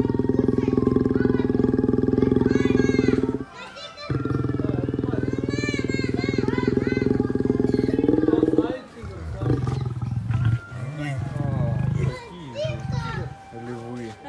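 White lions mating: a long, loud, low, pulsing growl that breaks off briefly about three and a half seconds in, resumes, and rises in pitch just before stopping near the middle. Shorter, lower growls follow.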